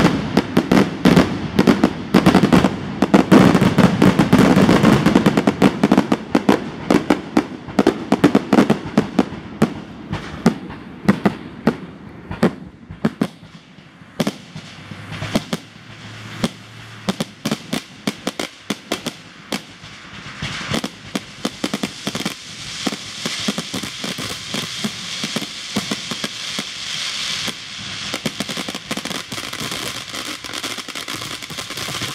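Fireworks display: rapid volleys of bursting shells and crackling, densest and deepest over the first ten seconds. It thins to scattered bangs in the middle, then a steady crackling hiss builds under further bangs over the last third.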